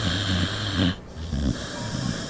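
A sleeping mixed-breed dog snoring: one long snore breaks off about a second in, and another starts soon after.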